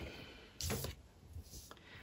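Tarot cards being handled over a wooden table: one short papery swish about half a second in, then a few faint soft ticks.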